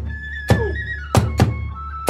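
Hiroshima kagura accompaniment: a large taiko drum struck three times, unevenly spaced, each stroke ringing on, while a bamboo flute holds a high note.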